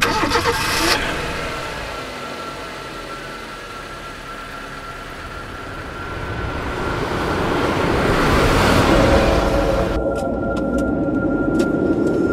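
Car sound effect: an engine starting and pulling away, the noise dipping and then swelling to its loudest about nine seconds in, over a thin steady tone. A few sharp clicks near the end.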